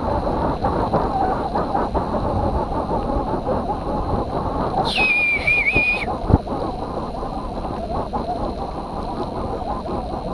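Mountain bike rolling fast over a bumpy grass trail: a steady rumble of tyres and wind with small knocks and rattles from the bike. About five seconds in, a high wavering squeal or whistle lasts about a second.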